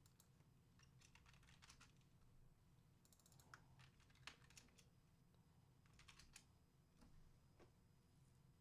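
Faint computer keyboard typing: short runs of keystroke clicks a few at a time, with pauses between them, over a low hum.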